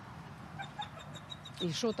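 A bird calling faintly: a quick run of short high notes, about six a second, through the middle. A woman's voice comes back near the end.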